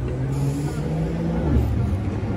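A motor vehicle's engine running on the street, a steady low hum that dips slightly in pitch about one and a half seconds in, over city traffic noise.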